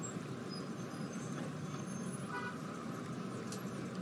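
Street traffic ambience: a steady low rumble of passing cars, with one short, faint car-horn toot about two and a half seconds in.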